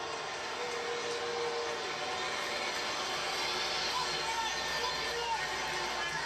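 Ballpark crowd noise from a televised baseball game, a steady murmur of many voices heard through a TV's speakers.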